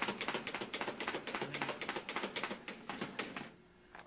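Desktop paper-folding machine running, with a rapid, even clatter of about eight clicks a second that stops abruptly about three and a half seconds in, followed by a single click near the end.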